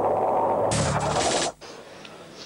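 Broadcast sound-effect sting: a dense musical sound, then a loud hissing whoosh a little under a second long that stops abruptly about one and a half seconds in, leaving a quieter tone.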